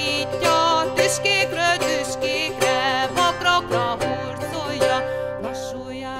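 Renaissance lute playing a quick plucked instrumental passage between the verses of a Hungarian folk ballad, many notes picked in a running line with no voice.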